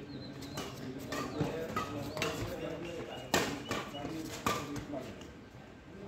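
Badminton rally: about half a dozen sharp racket strikes on the shuttlecock, roughly a second apart, the loudest a little past halfway, with voices in the background.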